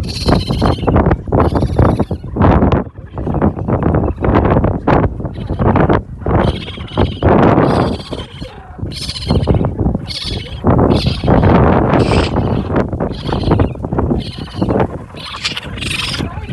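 Newborn common raccoon kits crying in the nest: an irregular, rapid string of short, shrill calls, one after another.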